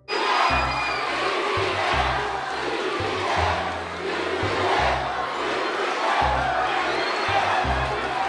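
A large crowd cheering and shouting, with music and a low bass line underneath.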